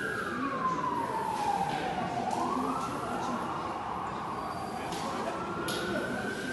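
Emergency vehicle siren wailing: one slow cycle that falls in pitch over the first two seconds, then climbs back up over the next three. Faint scrapes of a twig broom on paving stones come in between.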